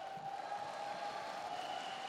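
Faint audience applause in a large hall, an even patter with a faint steady tone underneath.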